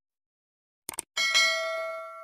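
Sound effects for a subscribe animation. A quick double mouse click about a second in, then a small notification-bell ding that rings out and fades.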